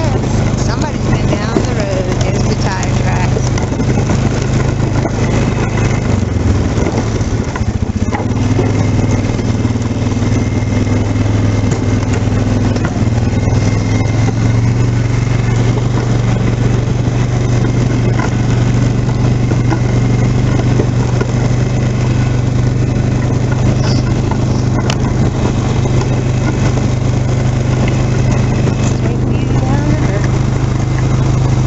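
Polaris Sportsman 500 ATV's single-cylinder four-stroke engine running steadily while the quad is driven along, heard from on board. The engine note shifts about six to eight seconds in, then holds steady.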